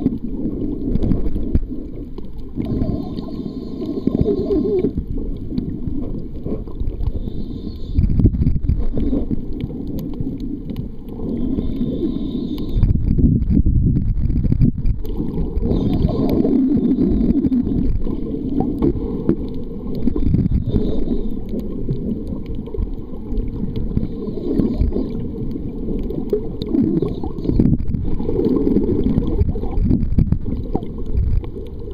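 Muffled underwater rumble and gurgling of water moving around a submerged camera, rising and falling unevenly.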